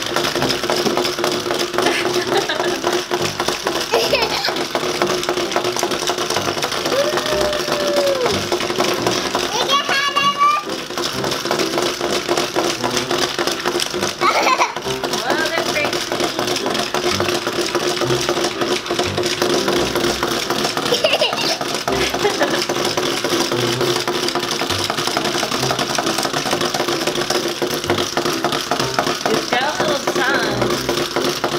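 Two small battery-powered walking toys, a pig and a dog, running together: their little geared motors make a continuous buzzing rattle as the legs step them across a tabletop. A child's brief vocal sounds come in now and then.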